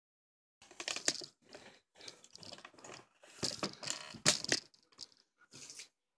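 Handling noise from a phone camera being moved about and set in place: irregular rustling and bumping, with sharp knocks about a second in and, loudest, a little after four seconds.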